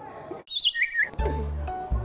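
A short, high chirping sound effect that steps down in pitch, followed about a second in by background music with a bass line starting up.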